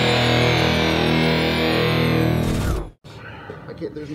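Channel intro music with distorted electric guitar and a high falling sweep over it. It cuts off sharply about three seconds in, leaving faint room noise.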